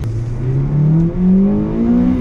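Acura RSX's K20 four-cylinder engine accelerating, heard from inside the cabin. Its pitch rises steadily, with a brief dip in loudness about a second in.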